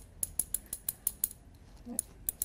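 A quick, even run of light, sharp clicks, about six a second.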